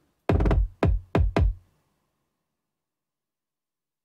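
Hip-hop kick drum played back from a DAW, dry without saturation: four deep, punchy hits in quick succession in the first second and a half.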